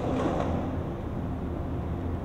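Steady low rumble and hum of city traffic, with no board impacts.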